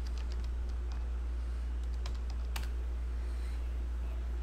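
Typing on a computer keyboard: irregular key clicks through the first two and a half seconds or so, the loudest one near the end of that run, over a steady low hum.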